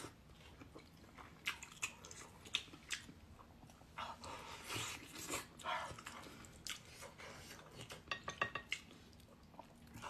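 A person chewing and biting sticky braised meat on the bone, with wet mouth clicks and smacks; a quick run of sharp clicks comes about eight seconds in.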